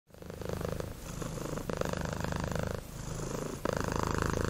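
Domestic cat purring, the buzzing purr coming in repeating cycles about a second long.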